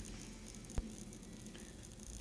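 Faint steady background hiss between narrated sentences, broken once by a single short click a little under a second in.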